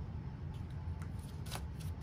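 Tarot cards being handled as a card is drawn from the deck: a few soft, brief card flicks and slides over a steady low hum.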